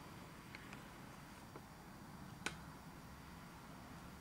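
Near silence: quiet room tone with a faint low hum, a few tiny clicks and one sharper click about two and a half seconds in.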